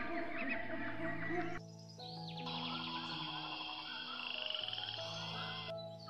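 Frog croaking over background music of held notes; partway through, the calls change to a higher, rapid rattling trill.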